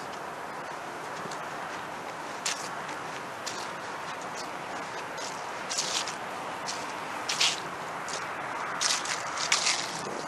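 Steady background hiss with scattered short rustles and crackles, coming more often in the last couple of seconds.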